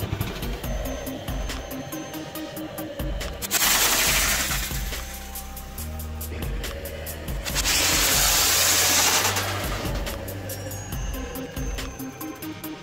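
Electronic music with a fast steady beat, over which come two loud hissing rushes, each about two seconds long, starting about three and a half and seven and a half seconds in: a homemade PVC-pipe launcher firing firework-propelled projectiles that spray sparks.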